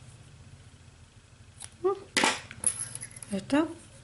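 Scissors snipping the crochet yarn tail, a couple of short sharp clicks about halfway through, amid brief vocal sounds.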